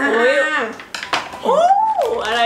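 Scissors snipping open a plastic blind-bag packet, with a few sharp metallic clicks around the middle. A woman's drawn-out voice runs over the first half, and a short rising-then-falling vocal sound comes near the end.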